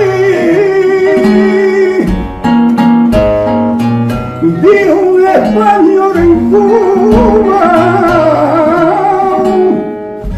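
Flamenco singing: a man's voice holding long, wavering, ornamented notes over an acoustic guitar accompaniment.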